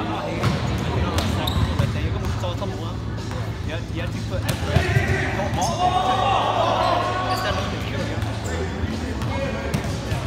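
Volleyball rally in a gymnasium: sharp smacks of the ball being hit, echoing in the hall, with players shouting to each other in the middle and a steady low hum underneath.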